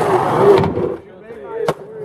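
Voices of a group of people calling out over outdoor noise, cutting off abruptly less than a second in; after that, quieter voices with a single sharp click near the end.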